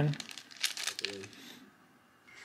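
Plastic binder card-page sleeves crinkling and rustling under the hands as a trading card is handled and turned over, a dense crackle that dies away near the end.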